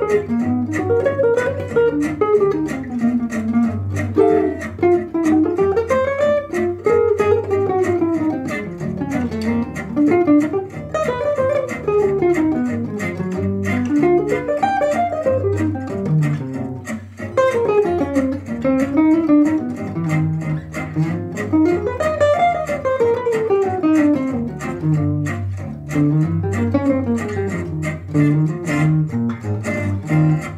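Archtop hollow-body jazz guitar playing fast single-note bebop lines, runs of notes climbing and falling in long arcs with hardly a break.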